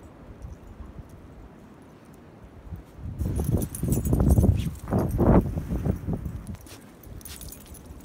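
Dogs play-growling and scuffling as they wrestle in deep snow: a run of low, rough growls in loud pulses, starting about three seconds in and dying away after about three and a half seconds.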